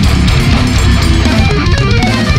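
Loud heavy metal music: distorted electric guitars over a full drum kit, playing without a break.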